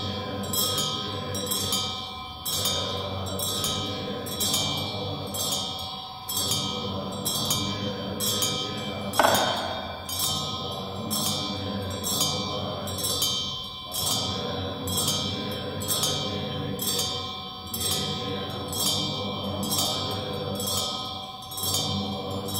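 Tibetan Buddhist ritual music: metallic percussion strikes about twice a second, ringing over a steady low drone of chanting voices, with one louder strike about nine seconds in.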